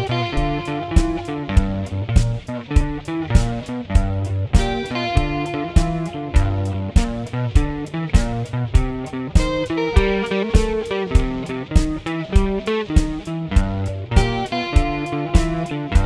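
Blues backing track in G with guitar over a steady beat, playing a twelve-bar progression with no lead part, left open for improvising over.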